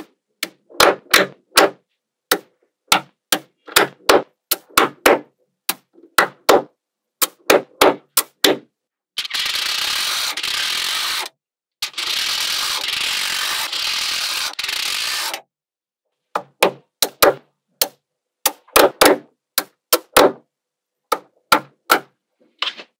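Small magnetic balls clicking together as strips are snapped onto a magnet-ball wall, in sharp single clicks and quick clusters. From about nine to fifteen seconds in there are two long stretches of dense, rapid rattling as a flexible sheet of balls is laid over the top of the block, the beads clicking into place one after another.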